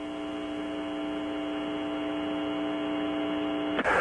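Steady electrical hum on a radio voice channel: a buzzy set of pitched tones that grows slowly louder and cuts off suddenly near the end.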